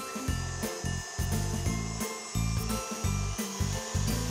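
KitchenAid stand mixer running, its wire whisk beating egg yolks with powdered sugar, under background music with a steady, rhythmic bass line.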